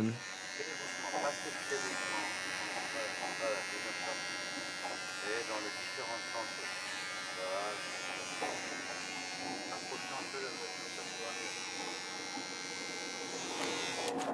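Handheld electric shaver buzzing steadily as it is run over the face, with quiet talk over it at times.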